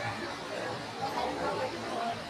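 Indistinct background chatter: several people talking at once in a crowded room, no clear words.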